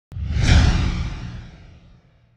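Intro title-card sound effect: a whoosh with a deep low rumble. It starts suddenly, swells to its loudest about half a second in, then fades away over the next second and a half.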